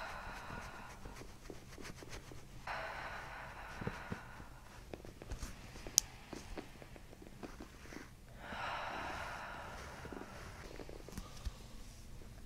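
A woman's slow, deep breaths into her belly, picked up close by a microphone at her abdomen, with chiropractic hands pressing there: a breath ending just after the start, another at about three seconds and a long one at about eight and a half seconds. Faint clicks and rustles fall between the breaths, with one sharp click about six seconds in.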